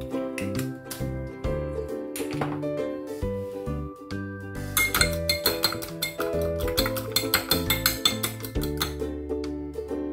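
Background music with a steady bass line throughout; over the middle of it, a metal fork clinking rapidly against a ceramic bowl while beaten eggs are stirred.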